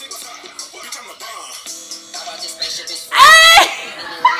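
Hip-hop track playing with a rapped vocal over the beat. About three seconds in, a woman lets out a short, loud, high-pitched yell of excitement, much louder than the music.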